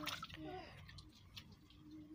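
Faint wet sounds of hands working a freshly plastered mud stove: a short splash at the start, then quiet squelching and dabbing as wet clay is smoothed with water-wet hands.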